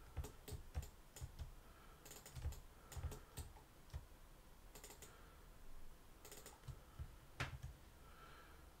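Faint computer keyboard and mouse clicks in irregular small clusters, with one sharper click near the end.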